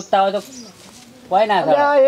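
A voice speaking in a short burst at the start and again from about two-thirds of the way in, with a brief lull between.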